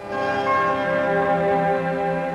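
Music with ringing, bell-like tones: a chord that sets in suddenly and is held.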